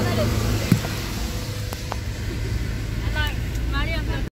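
Steady low rumble of a vehicle's engine and road noise, with a single sharp knock about a second in and a couple of light clicks after it. A voice is heard briefly near the end.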